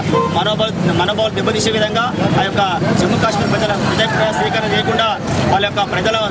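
A man speaking, likely in Telugu, with street traffic noise behind.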